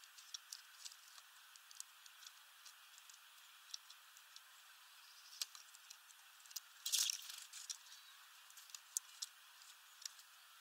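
Small bird pecking at sunflower seeds in a feeder tray: scattered sharp clicks and seed rattles, with a louder burst of clicks about seven seconds in.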